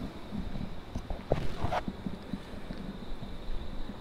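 Wind rumbling on the microphone of a handheld camera, with scattered small clicks and knocks.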